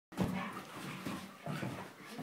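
Two Great Dane puppies play-fighting, giving a series of short vocal bursts, loudest near the start, amid the scuffle.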